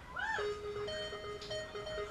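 Synthesizer sound opening with a quick swoop up and back down in pitch, then settling into steady held notes.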